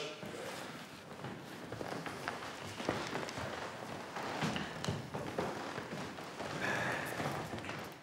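Footsteps and shuffling of several people walking across a wooden floor: a scatter of faint, uneven taps and thuds.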